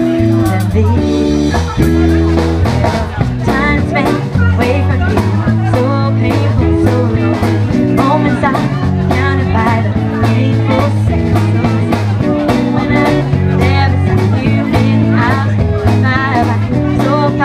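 Live band playing electric guitar, bass guitar and drum kit, with bending, wavering lead notes above a steady bass line and regular drum hits.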